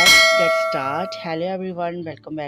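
A bright, clear bell ding from a subscribe-animation's notification-bell sound effect. It strikes once at the start and rings out, fading over about a second and a half.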